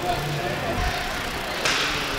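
Ice arena ambience: a steady murmur of crowd and rink noise, with a short hiss near the end.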